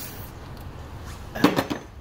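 A short cluster of clinks and knocks from handling tools or parts, about a second and a half in, over a low background.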